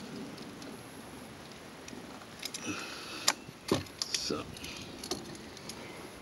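Motorcycle key and steering lock being worked. After a quiet stretch come several sharp clicks and a jingle of keys from about two and a half seconds in, the loudest a little after three seconds.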